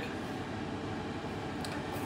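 Steady background room tone in a kitchen, with one faint light click about one and a half seconds in.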